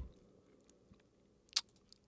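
Mostly quiet room tone with a few faint short crunches of a person chewing a snack, the clearest pair about a second and a half in.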